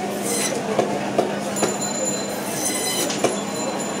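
Band saw running with a steady hum and a high whine, its blade cutting through a silver carp body in short bursts of high-pitched noise as it passes through flesh and bone. A few sharp clicks.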